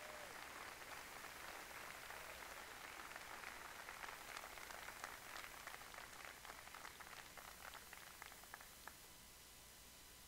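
Faint audience applause, a dense patter of clapping that thins to a few last claps and stops about nine seconds in.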